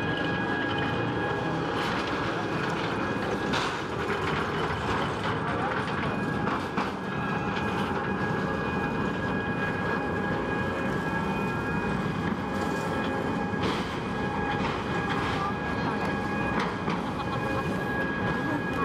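A railway depot transfer table (traverser) running as it carries a railcar sideways: a steady electric whine with a few short clunks, over crowd chatter.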